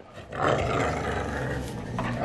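Dog growling in play, a rough, steady growl that starts about a third of a second in and keeps going.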